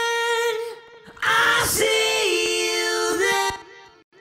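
Soloed rock lead vocal through a chain of subtle cascaded delays (16th-note, quarter-note and a short 32nd-note delay for width). A long held sung note fades into a faint tail, then a second phrase steps down to a lower note and trails off the same way.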